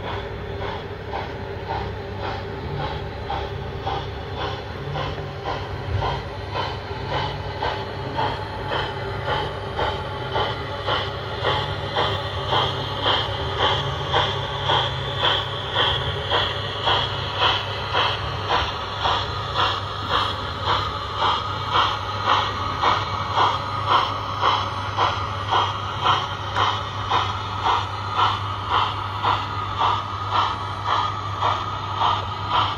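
Sound-fitted O gauge model pannier tank locomotive chuffing steadily as it runs, the exhaust beats growing louder and more pronounced from about halfway, over a steady low hum from the loco and the wheels on the track.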